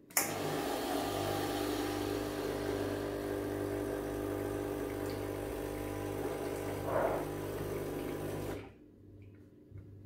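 Gaggia espresso machine's vibratory pump running steadily with a buzzing hum, pushing water through the group head. It starts with a click as the button is pressed and cuts off about eight and a half seconds in.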